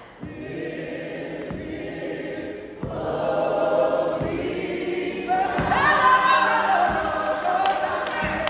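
Live gospel worship singing: a woman's lead voice with other voices joining in, growing fuller and louder about three seconds in. A few low thumps sound under the singing.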